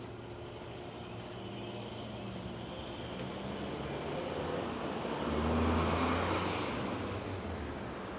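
A car driving past on a city street, its engine and tyre noise swelling to a peak about six seconds in and then fading, over a steady murmur of distant traffic.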